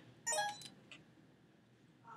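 Short electronic beep-chime from a Canon Vixia HF20 camcorder, a few stepped tones lasting about half a second, as the camcorder is switched to playback mode.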